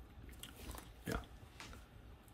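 Faint, soft handling noises from hands moving a polymer clay cane on a work table, in a quiet room. A short muttered "yeah" about a second in is the loudest sound.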